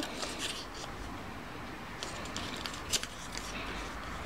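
Scrap paper being handled, rustling faintly, with a few light clicks and one sharper click about three seconds in.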